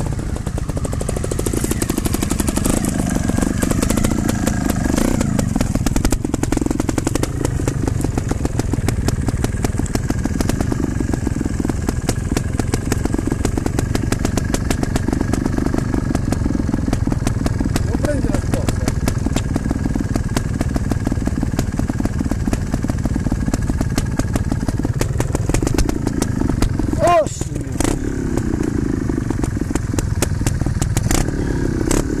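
Trials motorcycle engine idling steadily close by, its firing pulses even throughout, with engine tones rising and falling for a few seconds near the start and again near the end.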